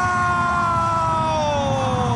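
A TV football commentator's long held goal shout of "Vào!", one sustained cry that slowly falls in pitch. It runs over steady stadium crowd noise.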